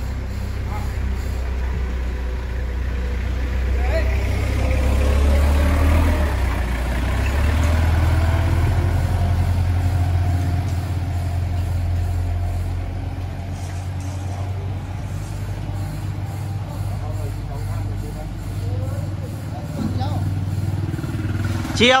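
Low, steady rumble of a motor vehicle engine running close by, growing louder over the first several seconds and then slowly easing off.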